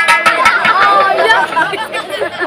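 Speech: voices talking over one another, with a sharp click right at the start.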